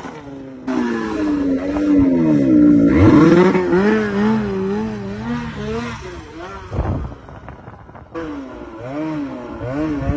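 Arctic Cat ZR 600 Sno Pro snowmobile's 600 two-stroke twin with a custom race exhaust can, revving as the sled rides, its pitch rising and falling again and again. It drops quieter for about a second around seven seconds in, then picks back up.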